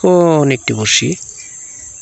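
Insects trilling steadily at a high pitch, with a person's drawn-out vocal sound, falling in pitch, over the first half second and a second short one about a second in.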